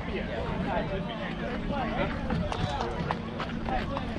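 Indistinct chatter of several people talking at once in the background, with a few light clicks.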